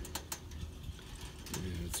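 A moving chairlift: scattered light clicks over a steady low rumble.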